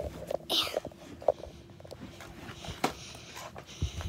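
Handling and movement noise as the camera is carried along: a few sharp clicks and knocks and a low thump near the end. About half a second in there is a short high squeal that falls in pitch.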